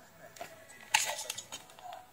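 Faint music-like sound leaking from the ear cups of a repaired Acer Nitro headset as its speakers play, with a few soft clicks from hands handling the ear cups. Both speakers are working.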